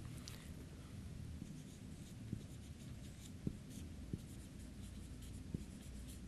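Felt-tip marker writing on a whiteboard: faint scratchy strokes with a few light taps, over a low room hum.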